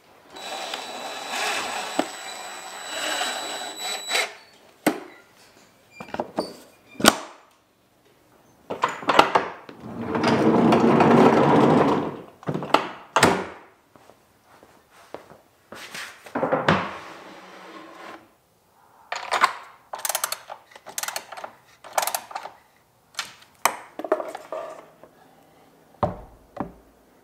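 A run of separate knocks and thunks from handling a plywood workshop cabinet and its fittings, with a few seconds of steady noise near the start and a louder stretch of steady noise lasting about three seconds near the middle.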